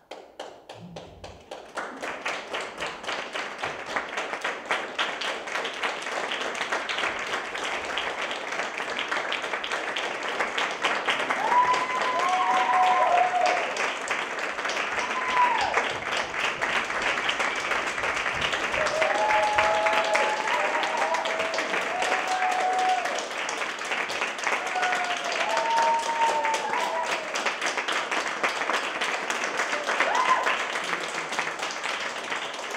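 Audience applauding, starting suddenly and building over the first two seconds into steady, dense clapping. Several whoops and cheers ring out through the middle.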